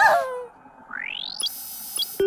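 A short falling whine from a cartoon voice, then a synthesized electronic sweep rising in pitch that breaks into a bright, high shimmering tone about a second and a half in: a handheld gadget's sound effect as its screen comes on.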